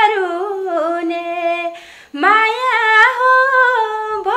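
A woman singing unaccompanied, holding long, wavering notes with no clear words, with a short breath break about two seconds in.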